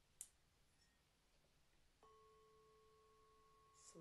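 Near silence broken by one soft click, then about halfway in a faint ringing tone begins abruptly and holds steady.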